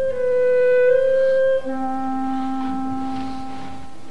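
Orchestra playing sustained held chords of film-score music, the harmony changing to a lower chord about a second and a half in.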